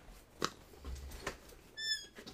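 A few sharp clicks and knocks, then near the end a short high-pitched squeak.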